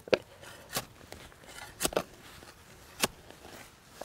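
A hand digging tool striking into garden soil, four sharp chops about a second apart, as the soil around a rooted boxwood cutting is dug out.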